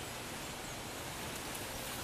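Steady background hiss of outdoor ambience with no distinct sound standing out.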